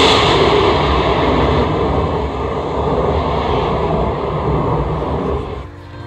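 A sound effect in the show's backing track: a steady rushing roar that starts suddenly as the music cuts out and fades away near the end, marking a change of season.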